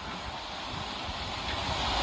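Steady background noise from the ground's field microphones during a cricket broadcast, a soft even hiss and murmur that swells slightly towards the end, with no distinct bat strike standing out.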